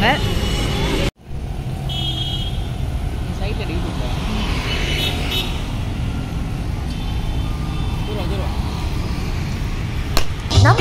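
Steady street traffic noise with background voices. A brief voice at the very start cuts off suddenly about a second in.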